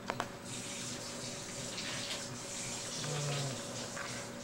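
Steady hiss of running water, starting about half a second in and easing off in the second half, after a couple of sharp clicks at the start.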